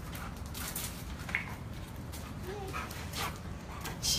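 A dog whining briefly, a short high whine about a third of the way in and a short rising one a little past the middle, both faint, over a steady low rumble with a few soft clicks.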